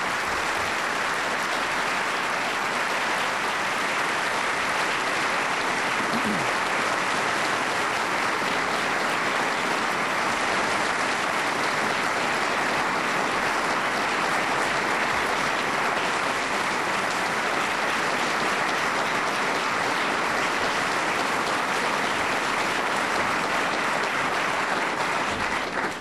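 Audience applauding, a steady unbroken clapping that lasts about 25 seconds.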